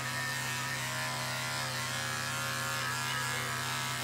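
Corded electric pet clippers running with a steady, even buzz as they shave a dog's short fur.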